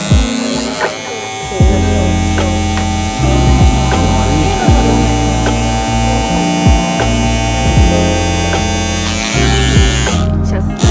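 Handheld electric carpet-carving trimmer buzzing steadily as it shears and levels the pile of a tufted rug, cutting out briefly near the end, over background music.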